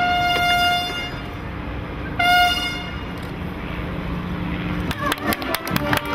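A loud, steady horn-like tone held for about a second, sounding again briefly about two seconds in. Near the end comes a run of sharp clicks and knocks.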